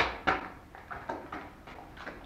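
A sharp knock followed by a run of lighter knocks and scuffs, about three a second, fading out over the first second or so.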